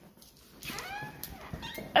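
A dog whining in a few short whimpers that rise and fall in pitch as it is left behind, with a sharp click near the end.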